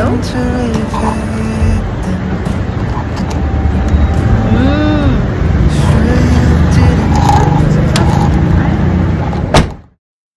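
Outdoor city ambience: a steady low rumble of road traffic with voices in the background. It cuts off abruptly near the end.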